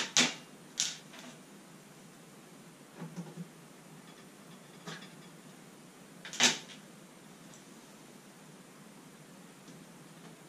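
Hard objects being handled on a kitchen countertop, making sharp knocks and clatters: a loud one at the start, another a little under a second in, softer taps around three and five seconds, and a loud knock about six and a half seconds in.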